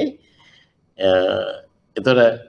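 A man's voice: his speech breaks off, there is a short pause, then one drawn-out vowel about half a second long, a hesitation sound between phrases.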